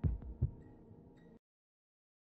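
Two low, short thumps about half a second apart over a faint, steady music bed, then the sound cuts off abruptly to silence just under a second and a half in.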